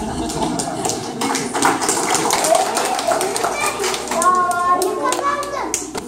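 Children's voices and scattered clapping from a young audience, with a child's voice speaking clearly over them near the end.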